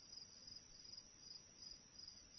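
Faint insect chirping: a high trill pulsing evenly about three times a second.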